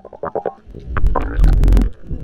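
Water gurgling and rumbling around a submerged camera as it moves underwater. A quick run of bubbly pulses comes first, then a loud low rumble with scattered clicks near the end.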